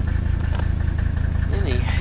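Mercedes 300SD's OM617 five-cylinder turbodiesel idling steadily, heard close to the tailpipe as an even low rumble.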